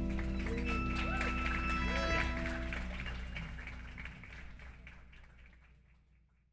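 The last chord of a live band (electric guitar, violin and acoustic bass) ringing out and dying away while a small audience claps and cheers, the whole fading out steadily toward the end.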